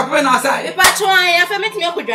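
A person speaking animatedly, with a single sharp smack a little under halfway through.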